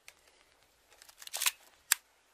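A few short, dry clicks in an otherwise quiet stretch: one faint click at the start, a small cluster about a second and a half in, and one sharp click near the end.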